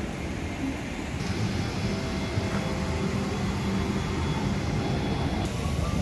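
Steady low rumble and air rush of an airliner cabin's ventilation during boarding.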